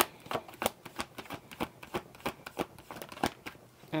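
A tarot deck being shuffled between the hands: a quick, irregular run of light card clicks and slaps, about four a second.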